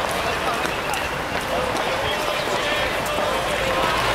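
Indistinct speech over a steady background of outdoor crowd and street noise.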